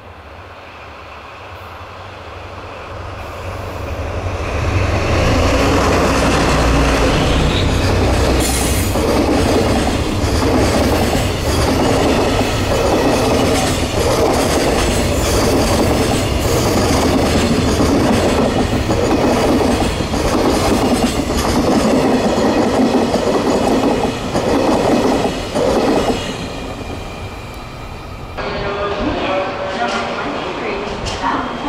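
JR Freight DD51 diesel-hydraulic locomotive hauling a container train, growing louder as it approaches and passes, its engines rumbling. It is followed by a long string of container wagons rolling by with a rhythmic clickety-clack of wheels over rail joints. Near the end the sound changes to quieter station ambience.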